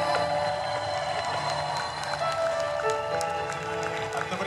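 Live electronic keyboard music over a concert sound system: held synthesizer notes moving through a slow melody.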